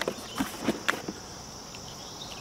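A few soft knocks and rustles of cardboard box flaps being opened in the first second, then a steady high background chirring of insects.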